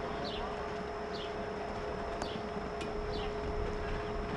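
Outdoor arena background: a steady hum, a bird giving a short falling chirp about once a second, and two sharp knocks about two and three seconds in, while a show-jumping horse canters on sand.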